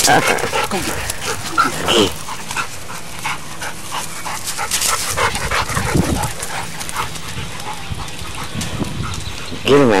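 Two dogs playing chase on a lawn, with short dog vocalizations among scuffling and running on the grass.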